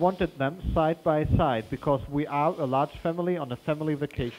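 A man's speech played back from a recording made with a close-talking microphone, with low pops from plosives and breath because the microphone sat in the breath stream. The speech sounds forced and emphatic, the Lombard effect of speaking in a loud, noisy room.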